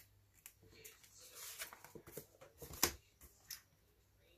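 Soft rustling and small clicks of hands handling a planner page and a stuck-down sticker strip, with one sharper click a little before three seconds in.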